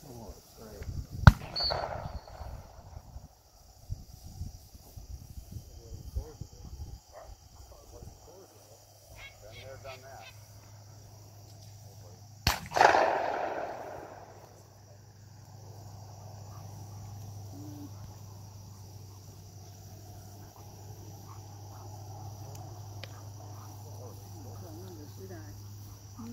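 Two gunshots about eleven seconds apart from the guns at a retriever hunt test. The first comes about a second in and is the loudest sound. The second comes near the middle and is followed by an echo that dies away over about a second and a half.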